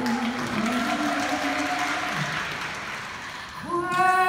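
Concert audience applauding, with a faint voice beneath it. Just before the end the singing and band come back in.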